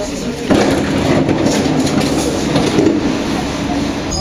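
Vienna U6 metro train heard from inside the car as it pulls out of a station. A louder run of motor hum and wheel-on-rail noise sets in suddenly about half a second in and carries on steadily.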